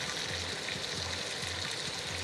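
Chicken livers frying in hot oil in a pan: a steady sizzle. They are left unstirred to take on colour.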